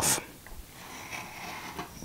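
Faint scraping of a small hand file worked along the edge of a thin wooden panel, shaving off a tiny bit to ease a tight joint.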